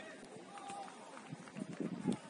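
Faint sounds of a football match on artificial turf: players running, a brief distant call about half a second in, and a few soft thuds of feet or ball late on.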